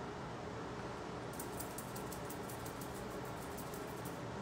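Quick, faint brushing strokes of a makeup brush against the face, starting about a second in, over steady room hiss.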